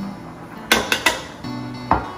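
Background music under a few sharp clacks of metal kitchen tongs and a plastic cutting board knocking as food is scraped off the board into a pot, the last clack as the board is set down on the counter.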